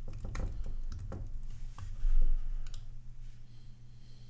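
Computer keyboard typing: scattered separate keystrokes and clicks while code is edited. There is a low thump about two seconds in, the loudest sound.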